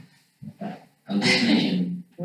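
An indistinct voice: a few short vocal sounds, a brief pause, then a longer stretch of voicing from about halfway.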